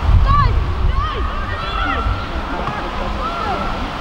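Distant shouting voices of players calling across a football pitch, with a low wind rumble on the microphone, strongest in the first second.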